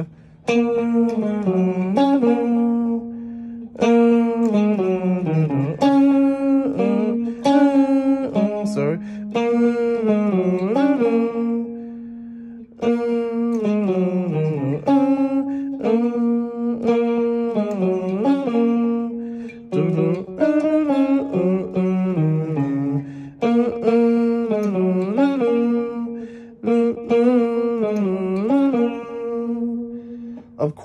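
Electric guitar playing a single-note riff with hammer-ons, pull-offs and sliding notes. It comes in repeated phrases a few seconds long, with short breaks between them.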